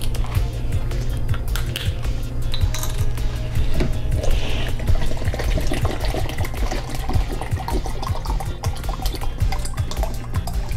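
Background music, with water pouring from a plastic bottle into a plastic measuring cup as it fills.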